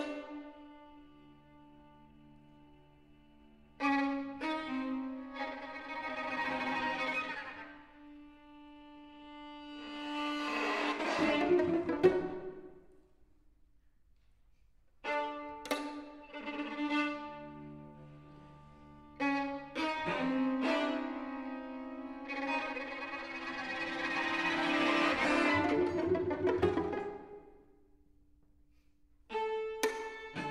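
String quartet playing contemporary classical music: sustained chords enter sharply, swell to a loud peak about twelve seconds in and fade almost to silence. The pattern repeats from about fifteen seconds in, peaking again around twenty-five seconds, and a new chord starts sharply near the end.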